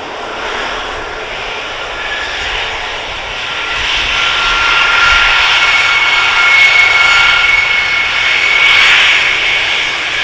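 Boeing KC-135R Stratotanker's four CFM56 turbofan engines running at taxi power: a steady jet rush with a high, even whine. It grows louder about four seconds in as the aircraft turns to face the camera, and eases off near the end.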